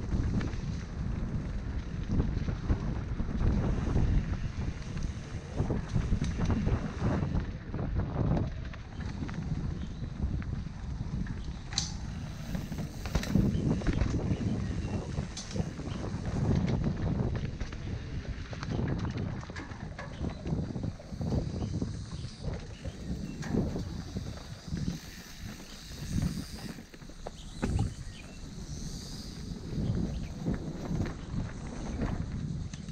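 Mountain bike ridden down a dirt singletrack: a steady rumble of wind buffeting the microphone, broken by frequent irregular knocks and rattles from the bike as it bumps over the trail.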